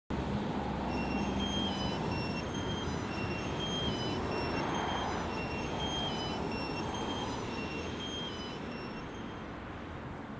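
A two-tone emergency siren alternating between two pitches about every half second, heard over a steady rumble of traffic noise and fading out near the end.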